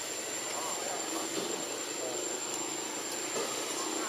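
Steady background noise with a constant high-pitched whine and faint distant voices.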